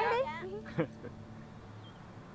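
A person's drawn-out, wavering voice trailing off in the first half-second, with a brief vocal sound near the middle, then fading to quiet room tone with a low hum.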